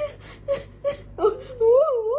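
A person's voice: a few short vocal bursts, then from about a second in a drawn-out wailing, moaning sound whose pitch swings up and down.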